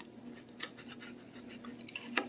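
Fork and knife working lightly in food in a plastic meal tray: a few faint scrapes and small ticks over a faint steady hum.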